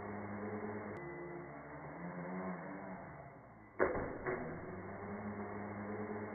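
Micro quadcopter's tiny motors and propellers whirring steadily, the pitch wavering a little with throttle. There are two sharp knocks about four seconds in, half a second apart.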